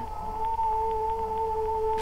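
A steady, eerie electronic drone held on one pitch, with a fainter overtone above it, growing louder about half a second in.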